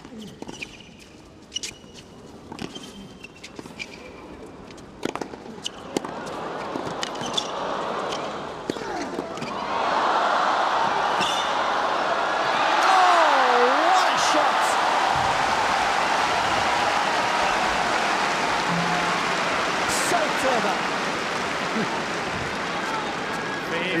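Racket strikes on a tennis ball during a long rally, heard as sharp pops a few seconds apart. Crowd noise builds from about six seconds in and becomes loud, steady cheering for the rest of the rally, with one rising and falling shout from a spectator partway through.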